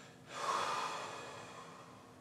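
A man's single heavy breath that swells about half a second in and fades away over the next second or so.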